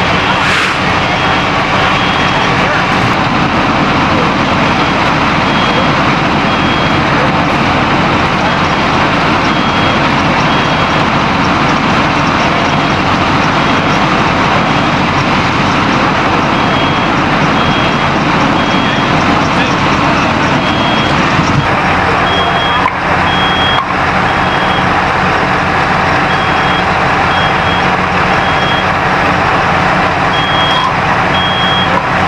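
Loud, steady running of fire engines and an ambulance at the scene, with a high electronic beep sounding in short repeated runs, like a vehicle's backup alarm.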